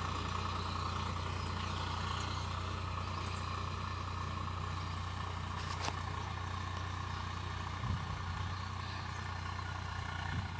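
Farm tractor's diesel engine running steadily while pulling a tine cultivator through soil, heard from behind at a short distance. There is a single sharp click about six seconds in.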